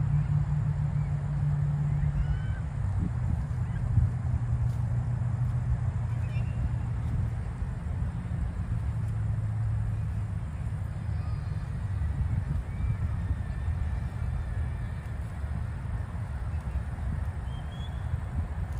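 Steady low rumble of distant road traffic, with faint, scattered short bird calls above it.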